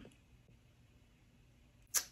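Quiet room tone in a small room, then a single sharp click near the end, just before speech resumes.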